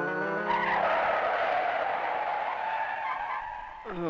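Car tyres screeching under hard braking: one long squeal of about three seconds that starts about half a second in, cutting off the end of a keyboard music phrase.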